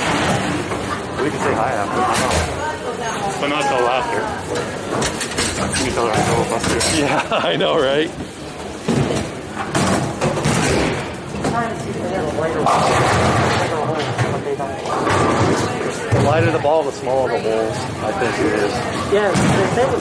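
Bowling alley din: people talking across the hall, with sharp knocks and clatters of balls and pins every few seconds on string-pinsetter lanes.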